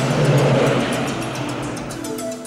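A car passing close by, its engine and tyre noise swelling about half a second in and then fading away, over background music.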